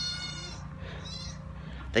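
A short, high-pitched animal cry in the first half second, with a fainter one about a second in.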